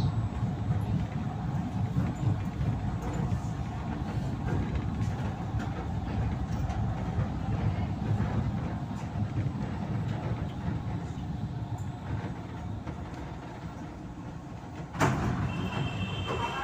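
LRT Line 1 light-rail train running and slowing into a station, heard from inside the car: a steady low rumble of wheels on track that eases off over the last few seconds. Near the end comes a sudden loud clunk, followed by a brief high tone.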